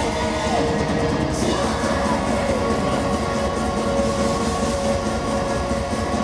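Loud live metal band playing through a club PA, heard from the crowd. It is a dense, unbroken wall of distorted guitar and backing with a held, droning chord.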